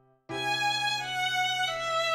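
A violin comes in after a short pause, about a third of a second in, and plays a melody of held notes that step downward in pitch, with a new note roughly every two-thirds of a second.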